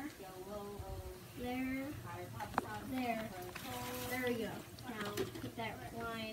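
People talking, their words not clear, with one brief click about two and a half seconds in.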